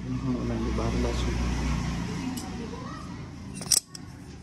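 Indistinct voices over a low rumble, then a single sharp click near the end as a steel wire-drawing plate is picked up off the floor.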